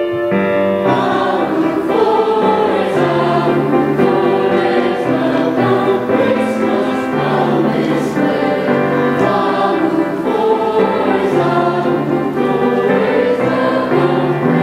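A mixed-voice middle-school choir of seventh and eighth graders singing in harmony, steadily and without a break, over held low notes that change every second or two.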